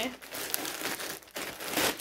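Clear plastic packaging crinkling as a pair of jeans is unwrapped and pulled out of it, in irregular rustles with a louder burst near the end.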